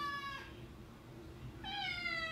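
Domestic cat meowing twice: long drawn-out calls that fall slightly in pitch, the first ending about half a second in and the second starting after a short pause. The second call comes as the cat yawns.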